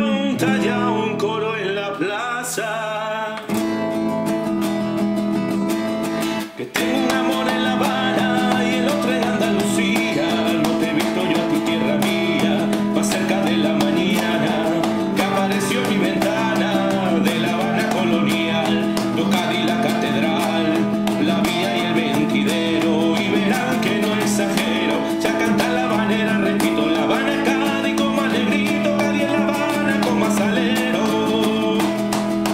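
Instrumental passage of a habanera led by acoustic guitar, with two brief dips in the sound in the first seven seconds.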